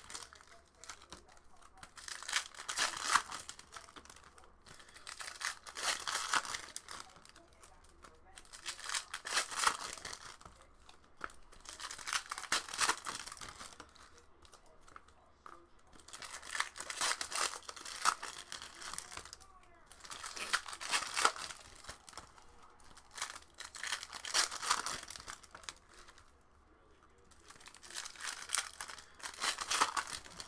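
Foil wrappers of Topps Chrome baseball card packs being torn open and crinkled by hand, one pack after another. The sound comes in repeated bursts of crackling every few seconds, with short lulls between them.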